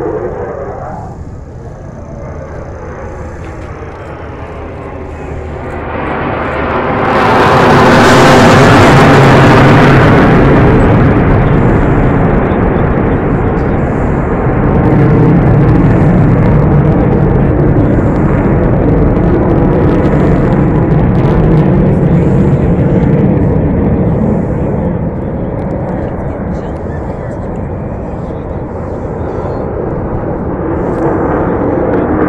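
Jet aircraft flying past: its engine noise swells sharply about seven seconds in, peaks with a strong hiss, then stays loud as a rumble before fading slowly near the end.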